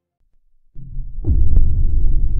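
Silence at first, then a deep low rumble of animated-logo intro sound design swells in under a second in. It turns loud with a falling tone about a second and a quarter in and keeps pulsing low.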